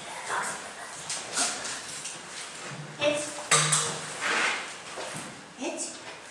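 Sharp metallic clinks and knocks, several of them, as a dog moves along a row of scent tins on concrete stairs during a nosework search, with a few low murmurs of a person's voice between them.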